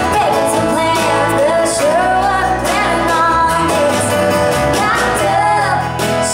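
A woman singing a country song, accompanying herself on a strummed acoustic guitar.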